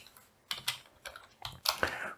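Computer keyboard typing: a quick run of irregular keystrokes, about eight or nine clicks over two seconds.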